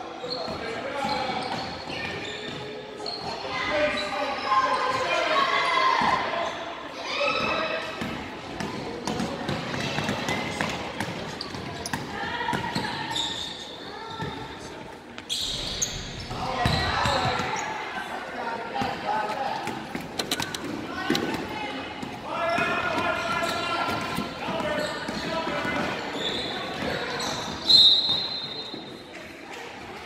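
Basketball game in a large gym: a ball bouncing on the hardwood court, with indistinct players' and spectators' voices throughout. Near the end comes a short, loud, high-pitched referee's whistle, blown for a foul.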